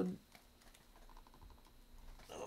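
A pin being pushed by hand through folded nylon fabric into a wooden board: a few faint clicks and fabric rustle, with a brief faint creak about a second in. The pin goes into the wood hard.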